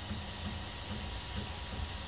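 Prusa i3 extruder's stepper motor and drive gear skipping on the filament, a low pulse two or three times a second over a steady fan hiss. The drive gear is not gripping the filament.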